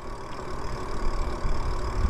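Steady riding noise from an electric bike moving along a paved path: wind and tyre noise with an uneven low rumble.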